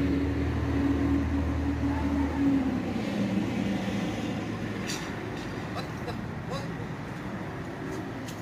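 A motor vehicle's engine drone that drops in pitch about two and a half seconds in and then fades away.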